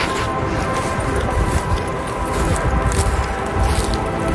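Soft background music of sustained, steady tones, over the uneven low rumble of wind buffeting a handheld phone's microphone.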